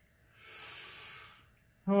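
A breathy exhale or sigh lasting about a second. Near the end a man's voice starts a long, drawn-out 'Oh'.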